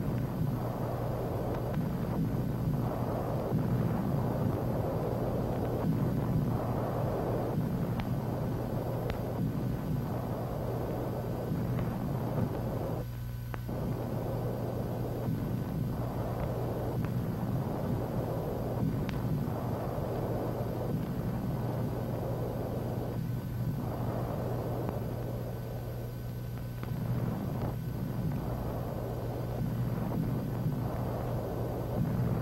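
Low, steady rumbling noise that swells and fades every second or two, like distant battle on an old newsreel soundtrack. A constant low hum runs under it, with a few faint clicks and crackles.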